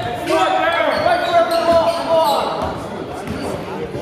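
A basketball being dribbled on a hardwood court in a large, echoing gym, with players' voices calling out over it.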